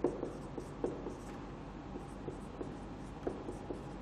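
Marker pen writing on a whiteboard: faint scratching strokes broken by small irregular taps as letters are formed.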